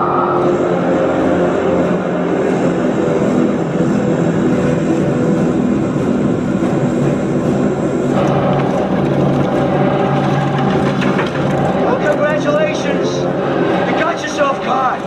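Large propeller aircraft engines droning steadily in a film sound mix, the sound shifting about eight seconds in. Faint voices come in near the end.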